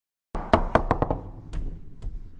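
Foosball table in play: a quick run of sharp knocks and clacks, beginning about a third of a second in, as the rods and players strike the ball and the table, followed by a couple of more widely spaced knocks.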